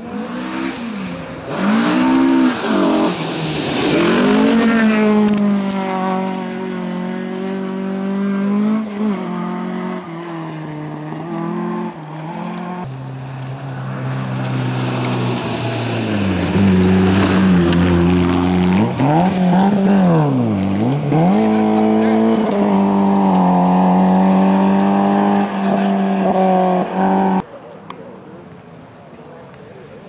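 Rally car engine revving hard through the gears, its pitch climbing and dropping again and again with each shift and lift. The sound cuts off abruptly near the end.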